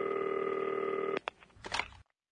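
A telephone ringing with one steady electronic tone that cuts off suddenly a little over a second in, followed by a few faint clicks.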